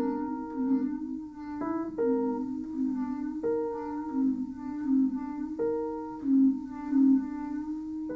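Free improvised chamber music: a clarinet holding long, slightly wavering low notes, while shorter higher notes come in sharply every second or two over it.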